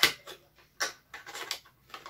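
A few short clicks and rustles of a small cosmetic product and its packaging being handled, scattered irregularly with quiet gaps between them.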